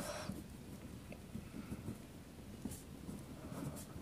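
Ballpoint pen writing on a paper workbook page: faint, irregular scratching of short pen strokes.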